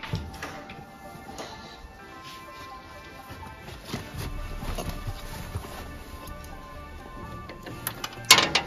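Background music with sustained steady notes.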